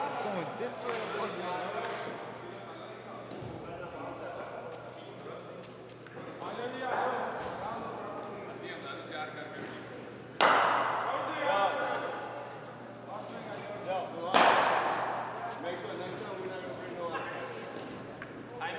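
Cricket bat striking a leather ball twice, about four seconds apart: two sharp cracks that ring on in the hall's echo, over background voices.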